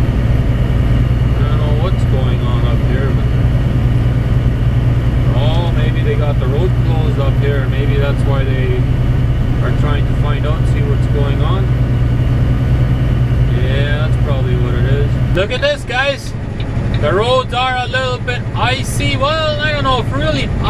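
Steady low drone of a semi-truck's engine and tyres heard inside the cab, with voices talking over it. About three-quarters of the way through the drone drops away and a louder voice takes over.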